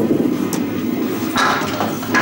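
A candlepin bowling ball rolling down a wooden lane with a steady rumble, then candlepins clattering as it strikes them about a second and a half in.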